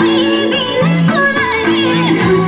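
Nepali folk song for a Bhailo dance: a voice singing an ornamented, wavering melody over held instrumental notes.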